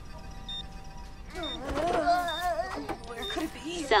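Cartoon self-destruct alarm: short high electronic beeps repeating about once a second. A louder wavering pitched sound comes in a little after a second and runs until near the end.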